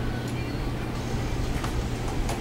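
Steady low hum of room noise, such as a fan or air conditioner, with a light click about one and a half seconds in as a plastic clothes hanger is put on a closet rod.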